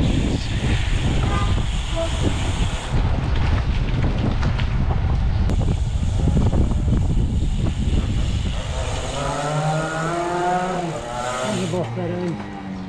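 Wind rushing over an action camera's microphone while riding a bicycle along a street, with road noise underneath. In the last few seconds a voice calls out over it.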